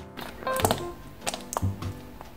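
Soft instrumental background music with held notes over a bass line, with a few sharp clicks scattered through it, the loudest a little after half a second in.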